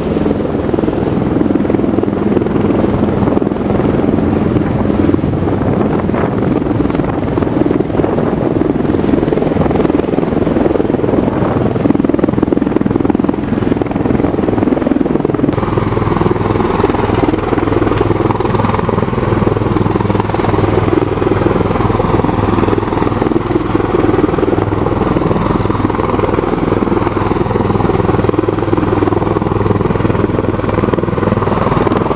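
Steady, loud drone of a V-22 Osprey tiltrotor's rotors and engines as it hovers and flies low over the sea. The sound shifts abruptly about halfway through.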